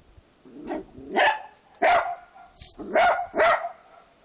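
Small terrier-type dog barking at a kitten: a quick run of about five sharp barks, starting about a second in.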